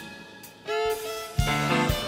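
Live instrumental passage played by a band with violins: the music drops away briefly, a violin line comes in about half a second in, and the full band with bass returns about a second and a half in.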